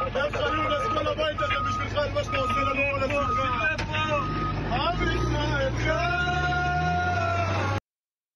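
Voices chanting in the audio of a played video clip, over a steady low engine rumble that grows louder about five seconds in. Near the end a long note is held, then the sound cuts off abruptly.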